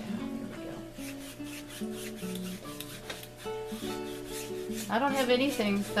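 Wide flat paintbrush scrubbing acrylic paint across a stretched canvas in repeated strokes, over soft background music with held notes. A voice comes in briefly near the end.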